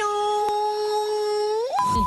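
A woman's singing voice holding one long high note, which slides up near the end and is cut off by a steady, high-pitched test-tone beep of the kind played with broadcast colour bars.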